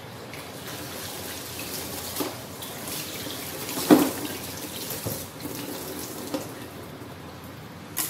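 Tap water running into a sink, with a few knocks, the loudest about four seconds in.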